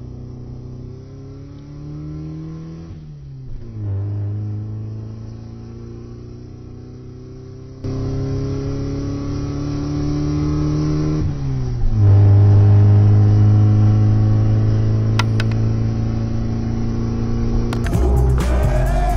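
A car engine accelerating hard, its pitch climbing and then dropping at each gear change, about three times. It gets louder about eight seconds in and is loudest after the last shift.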